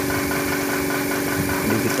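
An engine running steadily at idle off-screen: an even, unchanging hum with a fast regular pulse.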